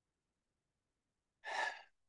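Near silence, then about one and a half seconds in a single short breath from the man at the microphone, lasting about half a second.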